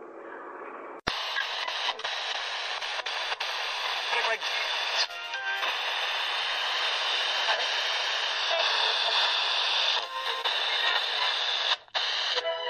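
A faint track fades out, then about a second in a new lo-fi beat-tape track begins suddenly with a thin, hissy sample of a voice that sounds as if heard through a radio, with no deep bass.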